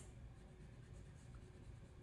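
Faint rubbing of a pencil eraser on paper, erasing a light pencil guideline.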